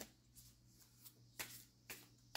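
Oracle cards being shuffled softly in the hands: a few brief, quiet rustles over near silence.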